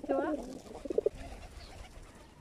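Feral pigeons cooing close by, a short run of low pulsing coos about a second in.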